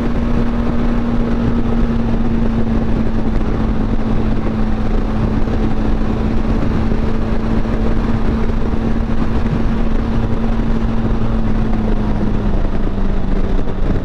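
Benelli TRK 502X's parallel-twin engine cruising at a steady highway speed, its note holding even and dropping slightly in pitch near the end, mixed with the rush of wind.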